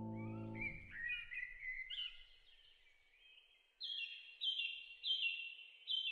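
Songbirds calling over a soft natural background as a sustained music chord ends within the first second. After a short lull the calls come as a run of short high notes, each falling slightly in pitch, a little more than one a second.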